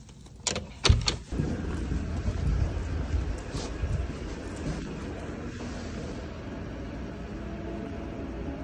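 Door with a steel lever-handle lock pushed open: a few sharp clacks of the latch and door in the first second and a half, then a steady low rumble for the rest.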